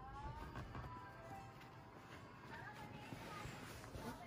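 Faint melodic sound, a few pitched notes in the first second, over soft rustling of a padded fabric sleeping mat being unrolled and its straps pulled.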